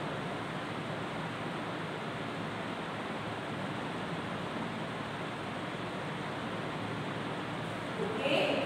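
A steady, even hiss of background noise with no distinct events.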